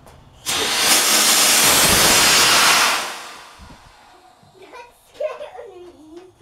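Homemade sugar rocket motor firing on a test stand: a sudden loud, even hiss that starts about half a second in, burns steadily for about two and a half seconds, then dies away over about a second.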